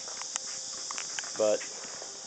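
A few light clicks and knocks from the camera being taken off its tripod and handled, over a steady high hiss.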